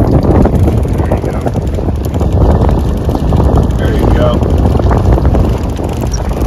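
Wind buffeting the microphone in a steady, loud low rumble.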